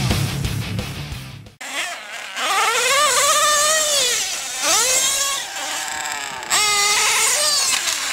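Rock music cuts off about a second and a half in. Then an OS .28 XZ nitro two-stroke engine in a Mugen MBX5T RC truggy, fitted with a tuned pipe, revs in three throttle bursts, each rising to a high whine and falling back.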